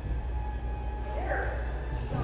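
Steady low hum of an electric floor fan running, with a faint voice over it a little past a second in.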